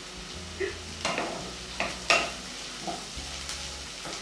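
A wooden spatula stirring and scraping food in a frying pan, with food frying in the pan. There are a few short scrapes and clinks.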